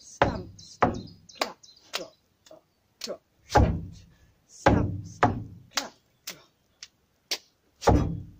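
Step-dance body percussion: heavy boot stamps thudding on a wooden board, mixed with sharper hand claps and slaps, in an uneven stamp-stamp-clap rhythm of about a dozen hits.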